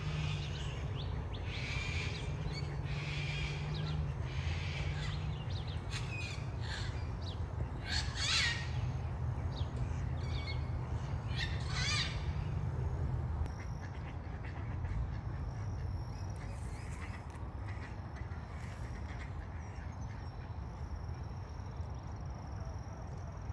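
Birds cawing, crow-like, in a series of short calls about a second apart, the loudest near the middle, stopping a little past halfway. A steady low hum runs under the calls and fades at about the same time, leaving faint thin high chirps.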